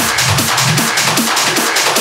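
Hard techno playing in a DJ mix with the deep kick and bass cut away. What is left is fast, even percussion ticks over short, falling, thinned-out drum hits.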